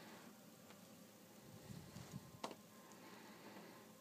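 Near silence with faint rustling of a glossy hardcover book page being turned by hand, and one short sharp click about two and a half seconds in.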